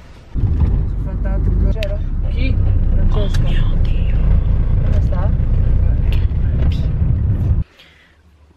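Loud low rumble of a car's cabin on the move, heard from inside the car, with faint voices talking over it. It cuts off abruptly near the end.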